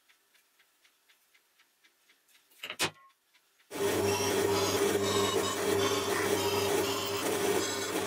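A spring-loaded center punch snaps once against the leaf-spring steel knife handle, a single sharp click. About a second later a bench drill press runs steadily and loudly, its motor humming while the bit drills holes through the steel handle.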